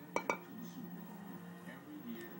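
Two quick ringing clinks close together, of something hard being knocked, over faint background voices and a steady low hum.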